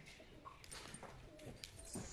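A horse's hooves shifting on a packed dirt floor, giving a few faint, scattered knocks.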